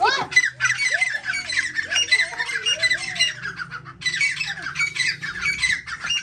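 Teetar (francolins) calling in a rapid, harsh, continuous chatter, breaking off briefly about four seconds in. A child's shout rises at the very start.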